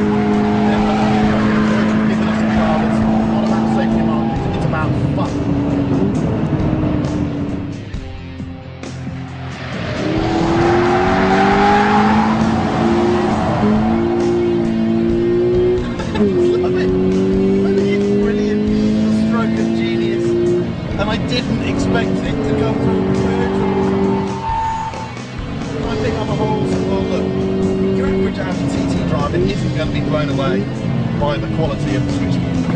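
Toyota GT86's flat-four boxer engine held high in the revs while the car drifts, its note holding steady pitches, stepping between them and climbing as the throttle opens, with tyres squealing. The engine sound dips briefly about eight seconds in and again near twenty-five seconds.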